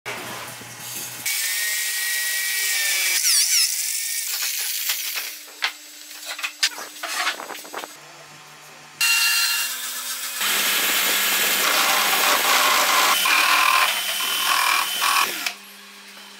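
Corded electric drill running in a series of short edited clips, the motor's steady whine starting and stopping abruptly at each cut. Between about four and eight seconds, scattered clicks and knocks of handling wooden parts.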